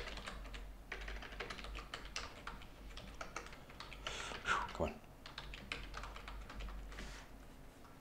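Typing on a computer keyboard: a run of quick keystroke clicks with short pauses, while code is being edited.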